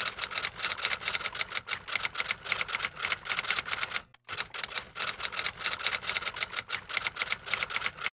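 Typewriter typing sound effect: a rapid run of keystroke clicks, with a brief break about four seconds in, played as on-screen text types itself out.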